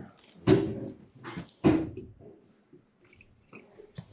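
Two short bursts of a person's voice, a brief sound about half a second in and a longer one falling in pitch a second later, then quiet room tone with a few faint small ticks.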